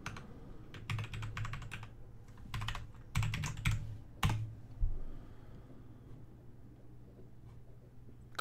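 Computer keyboard typing: several quick runs of keystrokes, ending with one sharper single key press a little past four seconds in.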